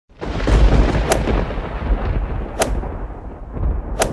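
Intro sound effect: a loud, deep rumble like thunder or cannon fire, with sharp cracks about a second and a half apart, about a second in, halfway through and at the very end.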